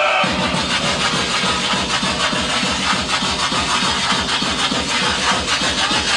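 Loud, hard, fast electronic dance music from a live DJ set, with a rapid pounding kick drum that comes back in right at the start after a short break in the bass.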